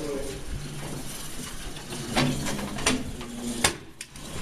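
Three sharp knocks in the second half, about two-thirds of a second apart, the last one the loudest, over faint voices and handling noise.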